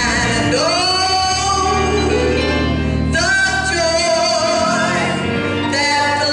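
A woman singing gospel through a microphone, her voice sliding into and holding long notes, over sustained instrumental chords.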